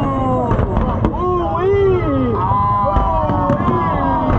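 Fireworks bursting in a continuous low rumble with occasional sharp cracks, mixed with the overlapping voices of people watching.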